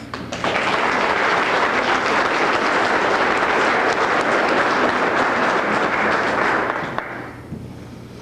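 Audience applauding: steady clapping that starts about half a second in and dies away shortly before the end.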